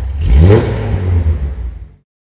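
Car engine revving: it starts suddenly, rises in pitch to its loudest about half a second in, then runs on lower and dies away near the end.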